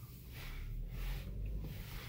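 Low, steady rumble of a car heard inside its cabin, swelling a little through the middle and easing near the end.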